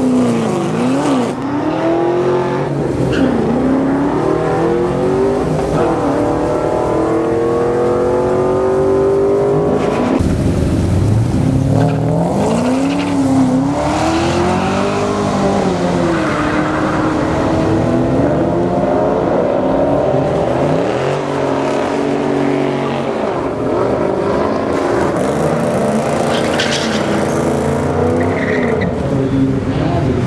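A Pontiac Trans Am and a Honda Civic hatchback revving repeatedly while staging for a drag race, their engine notes climbing and falling again and again.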